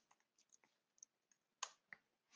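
Near silence with a few faint, short clicks of keys being typed on a computer keyboard, the loudest about one and a half seconds in.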